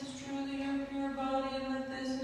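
A single voice chanting an Orthodox liturgical text on a nearly constant reciting note, broken into short syllables.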